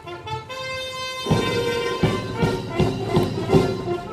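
Military brass band playing outdoors: a few held brass notes, then the full band comes in about a second in with a steady drum beat.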